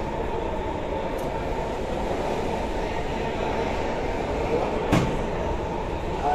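Steady low rumble of busy room noise with faint background chatter, and one sharp click about five seconds in.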